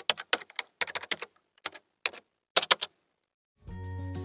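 Computer keyboard typing, irregular key clicks in short runs that stop about three seconds in. Background music starts near the end.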